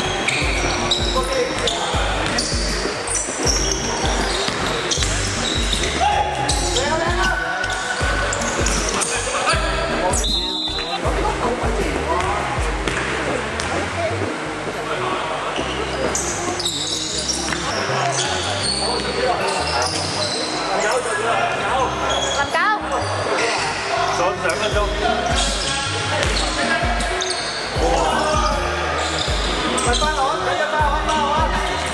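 Basketball bouncing on a hardwood gym floor during a game, with sneakers squeaking and the hall's echo around it.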